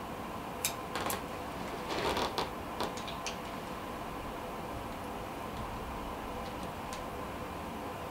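Hands handling fly-tying material and tools at a vise: a few light clicks and a short rustle in the first three seconds, then steady room hiss with a faint hum.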